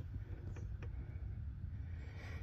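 Quiet background: a low steady rumble with two faint clicks about half a second apart.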